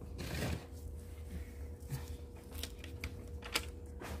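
Coarse granite gravel (masa) being worked around a freshly planted succulent in its pot. A brief gritty scrape comes near the start, then a few scattered light clicks of pebbles knocking together.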